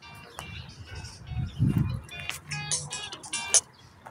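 Music made of short, high-pitched notes, several in quick succession in the second half, over a low background rumble.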